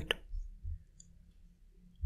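A few faint computer mouse clicks, with a couple of soft low thumps in the first second.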